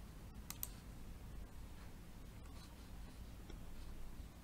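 Two quick computer mouse clicks about half a second in, faint over low room noise, as a web form is submitted.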